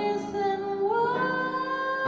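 A woman singing a jazz ballad with piano accompaniment. She holds a note, then her voice rises in pitch about a second in and holds the higher note.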